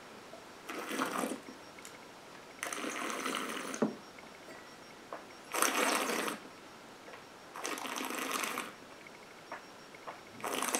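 A person tasting a sip of gin: four breathy, wet slurping sounds about two seconds apart, each a second or so long, as the spirit is held and drawn around the mouth.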